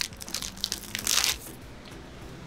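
Thin plastic protective film being peeled off a car taillight lens and crumpled by hand, crinkling in several short bursts over the first second and a half, then quieter.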